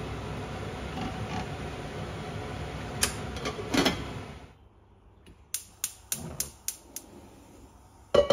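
Clicks and clunks of a Breville rice cooker being set up: the inner pot seated, the lid put on and the cooker switched on. A few knocks come near the middle, then a quick run of about six sharp clicks a little later.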